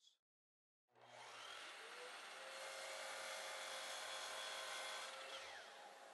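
Sliding compound miter saw running and cutting an angle across the end of a hardwood board. The sound starts about a second in, builds over the next second or two, holds steady, and eases off near the end.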